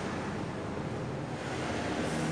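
Steady room noise: an even hiss with no distinct events.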